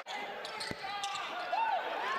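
Live basketball court sound in an arena: a steady crowd murmur, a single ball bounce on the hardwood floor about two-thirds of a second in, and a short sneaker squeak near the end.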